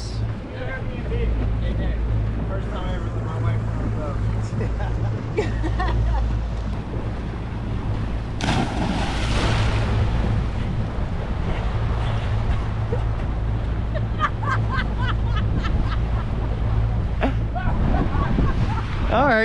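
A splash about eight and a half seconds in, as a person plunges into the sea beside a boat. Under it runs a steady low rumble on an action camera's microphone aboard the boat.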